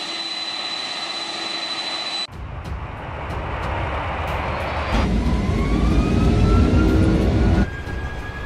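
Jet airliner engines at takeoff power on the runway: a steady roar over a heavy low rumble, with a whine rising in pitch from about halfway through. The sound changes abruptly three times, at about two seconds, five seconds and near the end, as spliced takeoff clips do.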